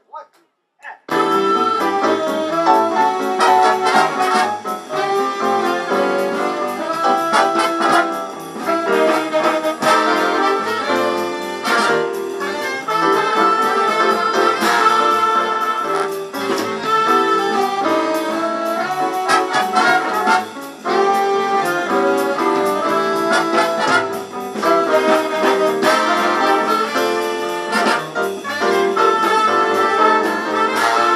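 Big band jazz orchestra playing an up-tempo tune with trumpets, trombones, saxophones and a rhythm section. The band comes in about a second in, after a few short taps.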